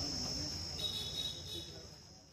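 Crickets chirring: a steady high-pitched trill, with a second, slightly lower trill joining about a second in. The sound fades toward the end.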